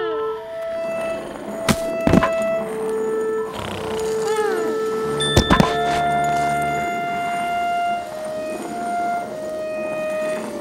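Cartoon background music, a melody of long held notes, broken by sharp comic thumps about two seconds in and again about five and a half seconds in. The later thumps are two characters colliding and falling on ice.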